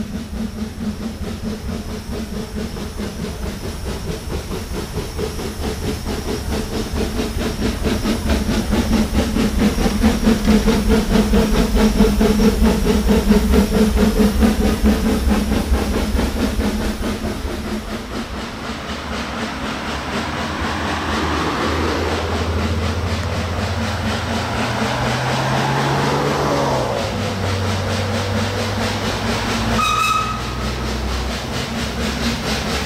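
SLM H 2/3 rack steam locomotive working uphill, its exhaust beating in a rapid chuff with steam hiss, growing louder over the first dozen seconds and then fading away. In the second half a different, steadier rumble with a tone that rises and falls takes over.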